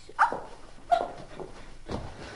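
Two short, sharp yelps falling in pitch, about two-thirds of a second apart, then a thump near the end.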